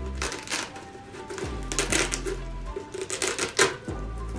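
Velcro strips being pulled apart in about three short ripping bursts, over background music.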